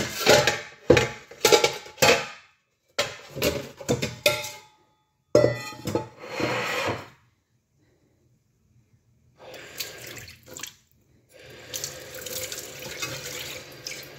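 Tap water running into a stainless steel pot in a sink: short bursts of splashing and pot clatter in the first half, a silent break, then a steady run of water filling the pot near the end.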